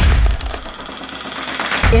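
Short musical sting for an animated title card: a deep impact hit, a rushing whoosh that builds up, and a second deep hit near the end.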